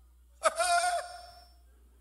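A single short, high-pitched voice call from someone in the congregation, starting about half a second in and held for about half a second before it fades. It is far higher than the preacher's voice.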